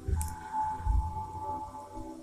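Handling noise from a small disassembled plastic microswitch turned in the fingers close to the microphone: a light click just after the start and soft low thumps, under a steady high tone.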